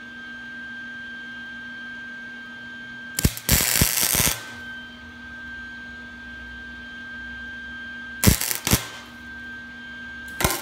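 Wire-feed welder striking short bursts of arc crackle on a thin steel exhaust manifold: a cluster of bursts lasting about a second three seconds in, and two brief ones about eight seconds in. These are short stitches welding up a crack. A steady electrical hum runs between the bursts.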